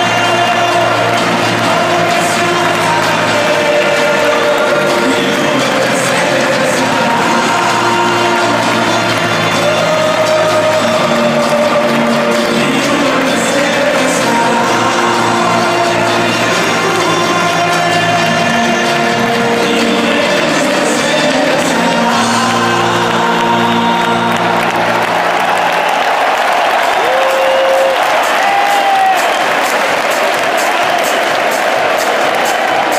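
Music played over a stadium's loudspeakers in slow, held notes, with a large football crowd singing and cheering along; near the end the music stops and only the crowd's cheering and applause remain.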